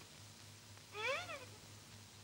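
A single short meow about a second in, rising and then falling in pitch.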